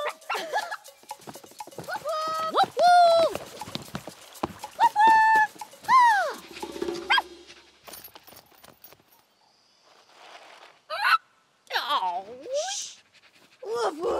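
Cartoon characters' high-pitched, wordless gibberish vocalizing for about the first seven seconds, then a few short whining calls from a cartoon dog near the end.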